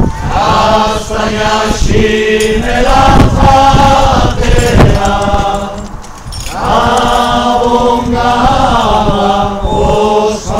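A group of voices singing a Basque Christmas song together in a slow, chant-like style over a steady low held note, with a short break between lines about six seconds in.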